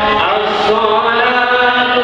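Islamic devotional chanting in long held notes that step slowly up and down in pitch, without a break.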